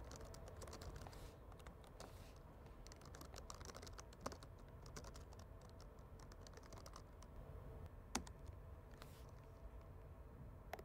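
Faint typing on a computer keyboard: quick, irregular keystroke clicks, with a couple of sharper clicks about four and eight seconds in.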